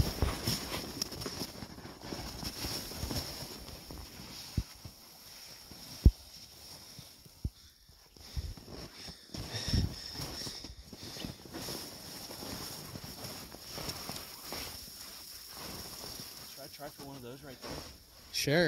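Crunching in snow and knocks from a handheld phone camera being moved and handled, with irregular crackles throughout and one sharp knock about six seconds in, over a faint steady hiss.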